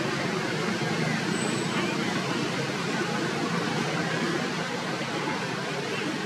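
Steady outdoor background noise, even and unbroken, with no distinct animal calls.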